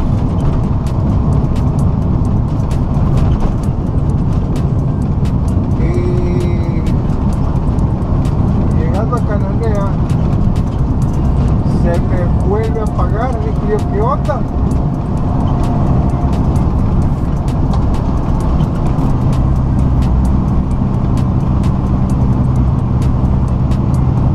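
Steady low drone of a tractor-trailer's diesel engine and road noise heard from inside the cab while cruising at highway speed.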